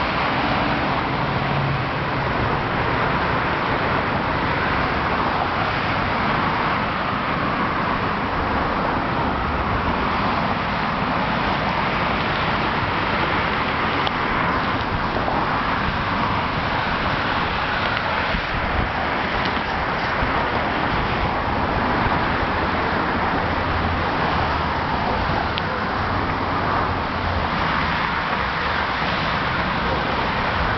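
Steady road traffic noise: a continuous wash of passing cars.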